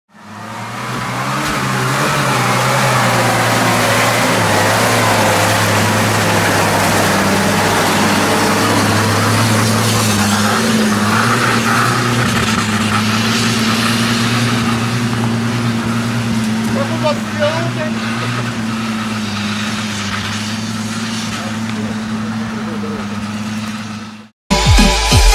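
Engine of an old Soviet off-road jeep running steadily under load as it drives through forest mud, its low drone holding a fairly even pitch; it fades in over the first second or two.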